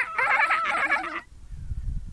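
A child's voice imitating a dolphin: a high squealing call whose pitch wavers rapidly up and down. It stops about a second and a quarter in.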